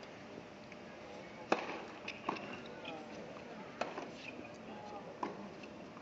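Tennis rally: a ball struck by rackets, four sharp pops over a few seconds, the first the loudest, over low crowd chatter.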